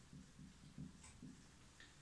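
Very faint whiteboard marker writing: a run of soft, quick strokes with a couple of light ticks, barely above room tone.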